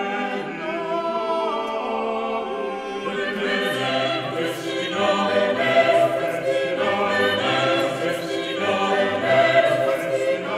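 Vocal ensemble singing eight-part Renaissance polyphony a cappella, several voices holding overlapping sustained lines. The lowest voices come in about three to four seconds in, filling out the sound.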